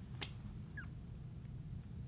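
Quiet room tone with a steady low hum, one faint click about a quarter second in and a brief high squeak near the middle.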